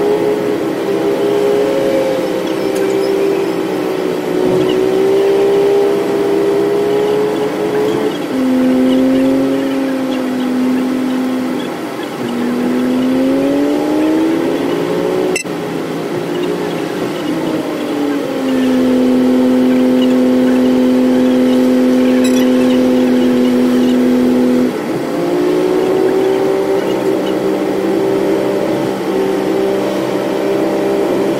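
Bus engine heard from inside the cabin under way, its note stepping down and climbing again with gear changes and throttle: a drop about eight seconds in, a rising stretch, a long steady lower note, then a jump back up near the end. A single sharp click about halfway through.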